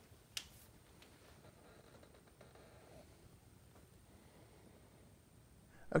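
Near silence, broken by one short, sharp click about a third of a second in.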